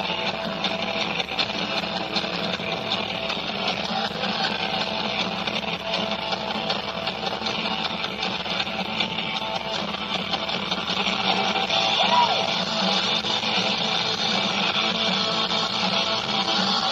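Live rock band with electric guitars playing continuously, a dense, unbroken wash of sound.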